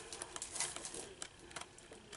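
Sheets of a 6x6 patterned paper pad being leafed through by hand: faint paper rustling with small scattered ticks.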